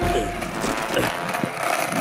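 Roller skate wheels rolling over wooden boardwalk planks, a steady rolling noise with a few short knocks as the wheels cross the boards.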